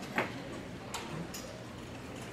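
Quiet hall noise with no music playing: one sharp knock near the start, then two fainter clicks about a second in.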